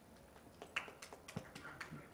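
A few faint, irregular knocks and clicks, about half a dozen spread over the second half.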